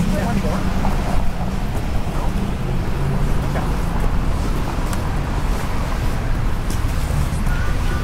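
Busy city street ambience: a steady rumble of passing traffic with passers-by talking.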